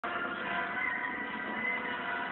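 A cartoon soundtrack playing from a television: music holding a steady, sustained chord, heard through the TV's speaker.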